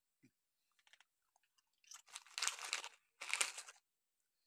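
Dogs crunching cake: a few faint clicks, then two bursts of crunching, about two and about three seconds in.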